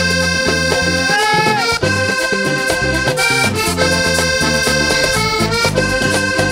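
Live vallenato band playing an instrumental break led by a diatonic button accordion, its bright held notes over a low bass line.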